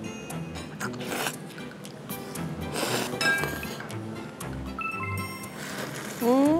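Ramen noodles slurped twice, about a second in and again around three seconds in, over background music with a steady beat and a few bright chime-like clinks.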